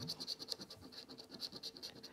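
A £2 coin scraping the latex coating off a scratchcard in quick, even back-and-forth strokes, about six or seven a second, faint.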